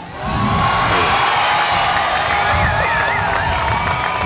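A large crowd cheering and whooping loudly after a line in a speech, swelling just after the start and holding steady. A high wavering whoop or whistle rises above the crowd about halfway through.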